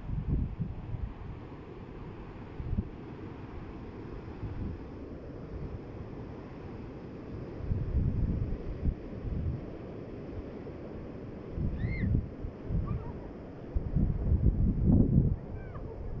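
Wind buffeting the phone's microphone in irregular low gusts, loudest about halfway through and again near the end, over a steady rush of splashing fountain water.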